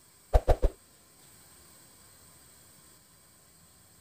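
Three quick plops in a row as toothpaste is squeezed from its tube into a pan of oil, followed by a faint steady hiss.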